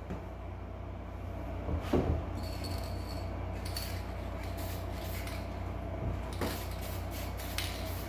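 A couple of knocks about two seconds in as the plastic door panel is handled on the bench, then an aerosol can of vinyl spray paint hissing in short, intermittent bursts.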